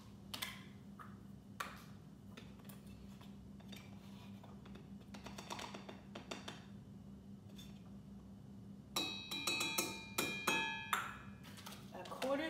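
Scattered light taps and scrapes of a measuring cup as cocoa powder is scooped and tipped into a mixing bowl. About nine seconds in comes a two-second cluster of ringing metallic clinks, like metal measuring spoons knocking together.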